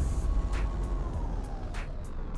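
Electronic sound-design music: a deep rumble under a faint tone that slowly falls in pitch, with light ticks about three times a second, gradually fading.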